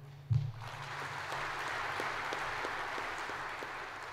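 A short low thump just after the start, then an audience applauding: many hands clapping in a steady patter that begins to die away near the end.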